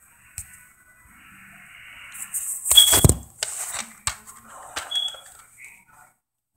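Rustling and clicking handling noise, loudest about three seconds in, with two short high beeps, the first during the loud rustle and the second about two seconds later.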